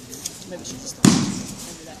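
A single sharp thud or slap about a second in, with a short echo trailing after it in the large hall, as the two fighters meet and grip.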